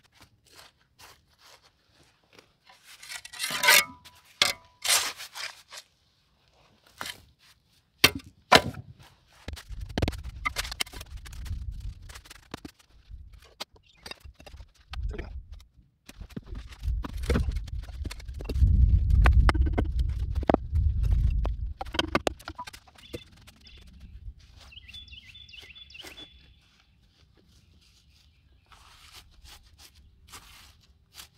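Rocks being reset by hand in a dry-stacked stone catch basin: a run of irregular sharp knocks and scrapes of stone on stone and on wet clay. Near the middle there is a louder low rumbling stretch.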